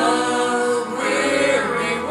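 A small mixed group of men and women singing together in harmony into microphones, the voices holding long notes.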